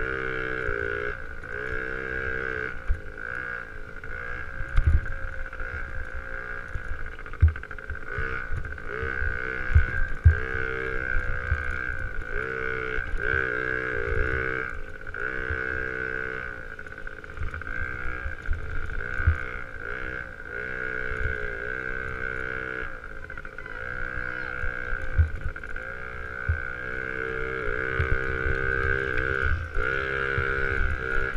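Small youth motocross bike engine heard from the bike itself, revving up and down again and again as it is ridden around a dirt track. Low thumps come through at intervals, several of them between about five and ten seconds in.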